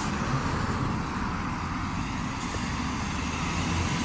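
Steady outdoor background noise: an even low rumble with a fainter hiss above it and no distinct event.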